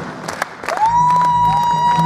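Live band music with the audience clapping and cheering. The music thins out for a moment, then a high held note slides up and sustains over a low steady bass note.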